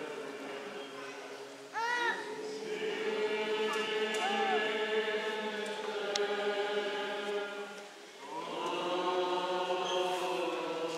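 A group of voices chanting an Eastern Orthodox Good Friday hymn, with long held notes and a few sliding ornaments. The singing drops away briefly near the end, then swells again.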